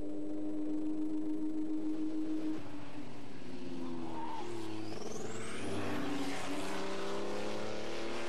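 Racing car engines running at high revs on a circuit. The note holds steady for the first couple of seconds, then dips and climbs again as the cars go through a corner, with a thin rising whine about midway.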